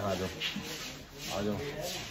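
A rubbing, scraping noise, with a man saying one short word about one and a half seconds in.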